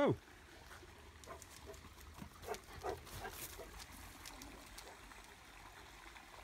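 Faint trickle of a shallow woodland stream, with a few short soft sounds scattered through it.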